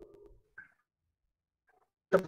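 Near silence on a video-call line, with a faint low murmur and a few clicks in the first half-second.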